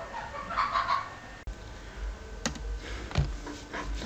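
Faint animal calls, bird-like, about half a second to a second in, followed by a few sharp clicks later on.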